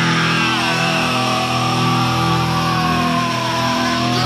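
Alternative-metal rock track in a drumless stretch: a sustained distorted chord rings over steady held bass notes. A high, wavering guitar note slides slowly down in pitch and then holds.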